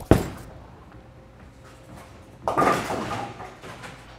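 Bowling ball landing on the lane with a sharp thud just after release, then, about two and a half seconds later, the ball crashing into the pins with a clatter lasting about a second.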